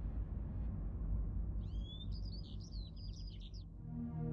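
A small bird chirping: a quick, twittering run of high chirps lasting about two seconds, starting a little before the middle, over a low, steady background music bed.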